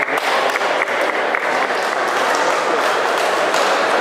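Audience applauding steadily as the winner of the bout is declared.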